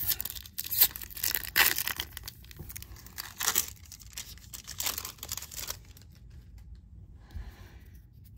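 Foil wrapper of a 2024 Topps Series 1 baseball card pack being torn open by hand and crinkled. A run of sharp crackling rips stops about two-thirds of the way through.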